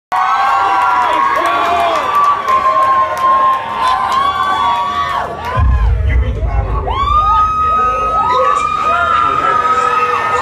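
Concert crowd cheering and screaming: many voices overlapping in rising and falling yells, with scattered claps in the first few seconds. A deep rumble comes in about halfway through and lasts a couple of seconds.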